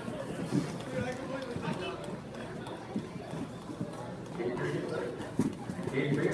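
Indistinct voices of people talking, with irregular clacks and knocks of inline skates on a wooden rink floor as skaters move about close by.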